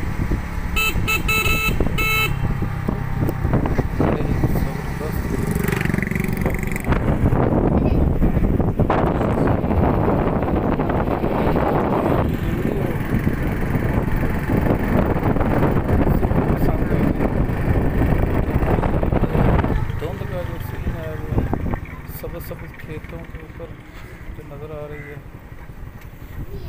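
A moving road vehicle running loudly and steadily. A horn gives several short quick toots about a second in. The noise eases off over the last few seconds.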